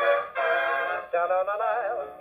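Swing dance-band music from a 78 rpm shellac record, played acoustically on a Kompact Plaza portable gramophone through its metal horn. This is the orchestra's instrumental lead-in, with a wavering, vibrato melody line about halfway through. The tone is narrow, with no high treble.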